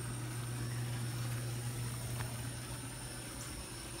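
A steady low mechanical hum, like a motor running, with faint steady high-pitched tones above it.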